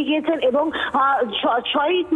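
Speech only: a reporter talking continuously over a phone line, the voice thin and cut off at the top.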